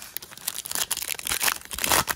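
Foil wrapper of a 2023 Panini Chronicles trading card pack crinkling as it is torn open by hand: a dense run of crackles, loudest near the end.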